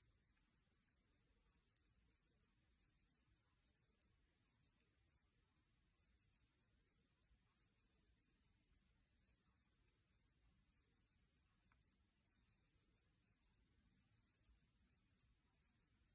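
Near silence with faint, irregular soft clicks and ticks of wooden double-pointed knitting needles as stitches of a purl round are worked.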